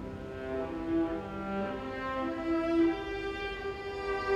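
String orchestra of violins, violas, cellos and double bass playing long bowed notes, the pitch shifting every second or so, with louder swells about a second in and near three seconds.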